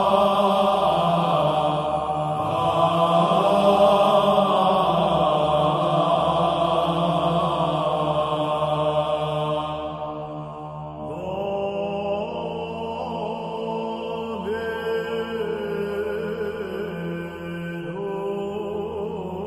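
Slow chanted choral music: many voices holding long notes together. About ten seconds in the chord thins out, and a new held chord comes in with a rising slide.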